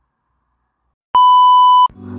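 After about a second of silence, a single loud, steady electronic beep that lasts under a second and cuts off abruptly.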